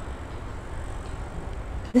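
Steady low background rumble with a faint hiss, no distinct event.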